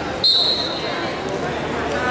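A referee's whistle gives one short, high, steady blast about a quarter second in, fading out within the next second, over the chatter of a crowd in a gym.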